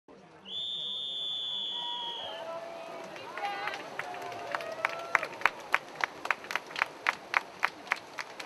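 Starting signal for a mass triathlon swim start: one steady high-pitched tone lasting about two seconds. Then brief shouts, and from about four and a half seconds in a regular run of sharp slaps, about three a second, as the swimmers set off through the water.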